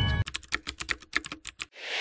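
Computer keyboard typing sound effect: a quick run of about a dozen key clicks, after the music stops just at the start. Near the end a rising whoosh swells and then cuts off suddenly.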